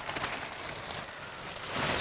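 Clear plastic protective cover from a new car's seat crinkling and rustling as it is peeled off and handled, a dense crackle that grows louder near the end.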